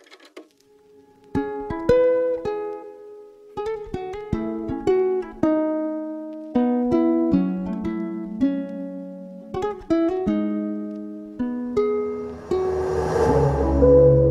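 Fingerstyle nylon-string guitar melody from a software instrument, playing plucked broken-chord notes that start about a second and a half in. Near the end a hissing swell rises and a deep bass comes in under the guitar.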